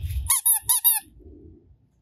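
A yellow rubber duck squeeze toy squeaked four times in quick succession, each squeak a short call falling in pitch.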